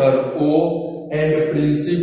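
A man's voice speaking, words drawn out on held pitches, with a short break about halfway.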